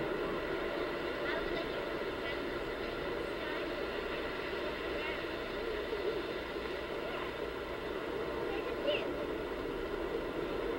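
Steady rush of wind and surf on a camcorder microphone at the beach, with a few faint, brief voices or calls now and then.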